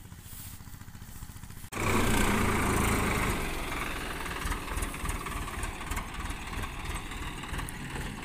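Farm tractor's diesel engine idling low and steady; just under two seconds in, the sound cuts abruptly to a louder stretch of the tractor being driven and turned, its engine working harder.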